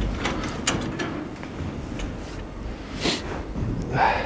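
Irregular footsteps and scuffs with a few light clicks, and a short hiss about three seconds in.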